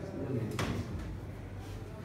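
A single sharp knock about half a second in, with soft rustling around it: a patient shifting his weight on an examination couch as he rolls from his side onto his back.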